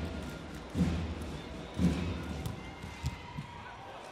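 Deep thuds about once a second, fading near the end, over the steady crowd noise of an indoor volleyball arena, with a sharp hit a little before the end.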